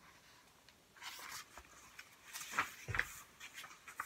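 Faint rustling and light handling of a picture book's paper pages as a page is turned, starting about a second in, with a couple of soft knocks around three seconds in.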